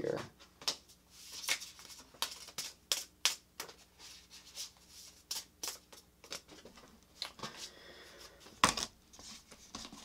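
Tarot cards being handled and slid against each other: a string of soft clicks and rustles, with a louder knock near the end.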